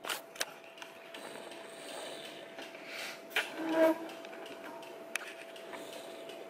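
Quiet camera-handling noise: a few light clicks and knocks over a faint steady whine, with a short soft murmur about halfway through.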